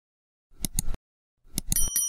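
Subscribe-button animation sound effects: a quick group of clicks about half a second in, a second group of clicks about a second and a half in, then a bright bell ding that rings on and fades.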